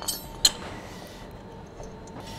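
A single sharp metallic clink about half a second in, from the steel pins and fittings of the side-shift extension arm being handled, over a faint steady workshop background.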